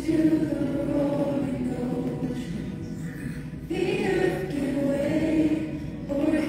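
Choir singing a slow worship song in long held notes; a new line begins a little past halfway.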